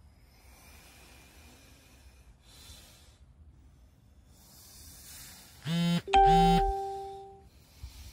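A loud two-note electronic chime about six seconds in: a short first note, then a second that rings on and fades away over about a second.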